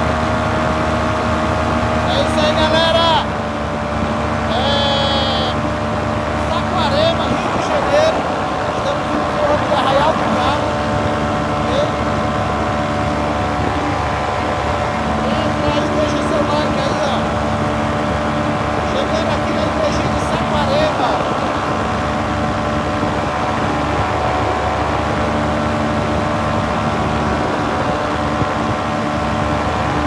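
Powered paraglider's engine running steadily in flight, with a person's voice calling out now and then over it.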